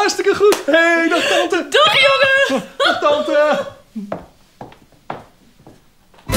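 Two people whooping and laughing loudly with high, drawn-out voices for about three and a half seconds, then a few soft separate knocks.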